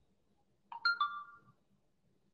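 Smartphone notification chime: a short electronic tone of two quick notes, fading within about half a second.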